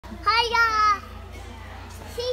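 A toddler's voice: one short, high-pitched, sing-song two-part call, lasting under a second.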